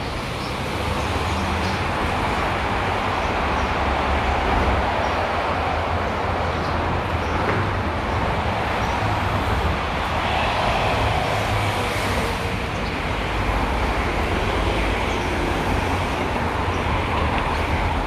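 Steady road traffic noise with a low rumble underneath.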